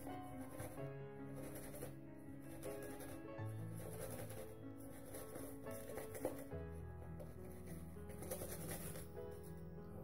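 Soft background music of slow, sustained chords, its bass note changing twice. Under it, the faint repeated swish of a shaving brush working lather on the face.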